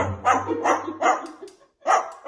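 White cockatoo imitating a dog, giving short barks: four in quick succession, then one more near the end.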